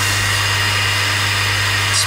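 xTool D1 Pro 20 W diode laser engraver running while it cuts clear acrylic: a steady whir from its cooling fan over a constant low hum.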